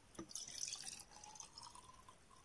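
Rose water trickling from a small plastic bottle into a small glass jar: a faint dripping, splashing pour, with a faint tone that rises a little in the second half as the jar fills.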